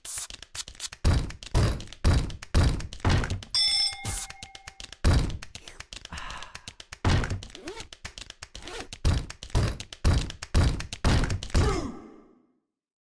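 A beat of heavy thuds, about two a second, broken by a couple of short pauses, with a brief electronic beep about four seconds in.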